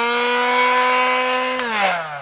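Small electric air pump for an inflatable sofa, its motor running with a steady whine. About one and a half seconds in it is switched off and winds down, the pitch falling away.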